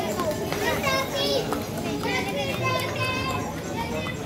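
High-pitched voices of children calling and chattering, heard over the general noise of the street.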